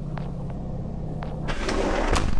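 Low, steady rumbling drone with two brief, quick falling tones, then a rising swell of noise building near the end: intro sound design leading into the song.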